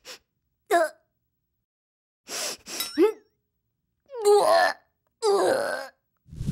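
A cartoon character's wordless vocal sounds: short breathy noises, then pitched grunts and gasping exclamations with sliding pitch, longer and louder in the second half.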